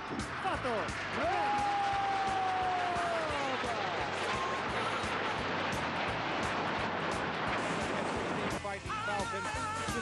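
Aermacchi MB-339 jets of an aerobatic formation passing low and fast overhead: a steady roar of jet engines with whines that fall in pitch as the aircraft go by, the strongest sliding slowly down over a couple of seconds. A man's voice comes back near the end.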